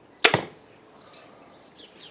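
Junxing Drakon 100 lb compound crossbow firing a bolt: one sharp, loud crack about a quarter second in, with a short ringing tail.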